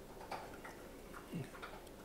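A quiet pause with a few faint, short clicks, scattered rather than regular.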